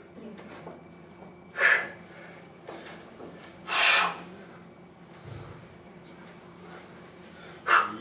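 A man breathing hard while he hangs between pull-up reps: two sharp, forceful exhalations about two seconds apart, the second longer, from the effort of a long, tiring set.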